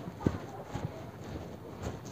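Dry bamboo sheaths being pulled and handled: a crackly rustle of dry leafy husk with a few sharp snaps or knocks, the loudest about a quarter-second in.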